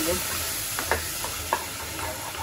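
Wooden spatula stirring a steaming tomato-onion masala in a non-stick pot, the sauce sizzling steadily, with a few light scrapes and taps of the spatula against the pot.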